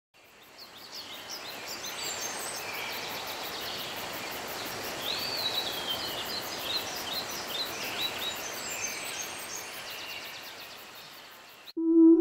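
Woodland ambience: several birds chirping and singing over a steady rushing background, fading in at the start and fading out near the end.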